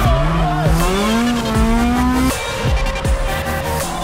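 A drift car's engine revving, its note climbing for about two seconds and then cutting off suddenly, over background music.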